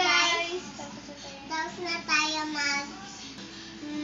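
Young children singing together in a sing-song way, in short phrases.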